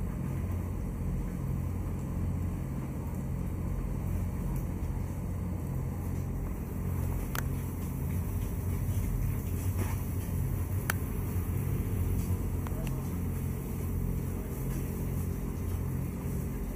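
A motor running with a steady low hum, with a couple of light clicks about seven and eleven seconds in.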